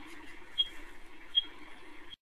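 Low background room noise with a short, high-pitched beep recurring about every three-quarters of a second.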